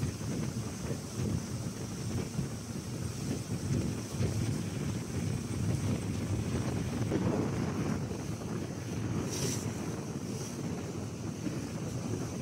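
Wind buffeting the microphone aboard a small boat under way, a steady low rumble with the wash of water around the boat. Two short high hisses come near the end.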